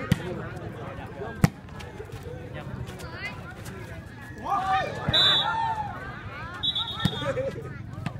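A volleyball being struck during a rally: a few sharp slaps of hand on ball, the loudest about a second and a half in, over the murmur of spectators, who break into shouts around the middle.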